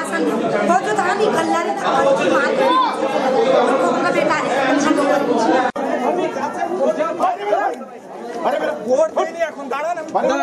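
Several men talking over one another in unclear, overlapping chatter. The sound breaks off for an instant about six seconds in, and a second scene of voices follows.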